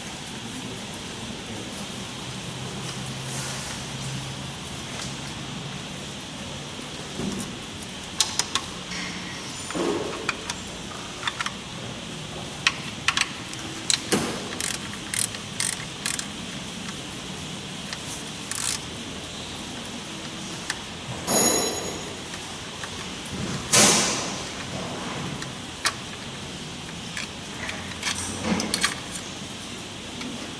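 Irregular metallic clinks and rattles of hand tools and a steel timing chain being unbolted and worked off the front of a diesel engine. A low hum runs through the first few seconds, and the sharp clinks come scattered from about a quarter of the way in.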